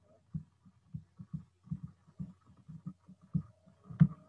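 Faint, irregular low thumps, several a second, from a stylus tapping and dragging on a tablet screen while writing by hand.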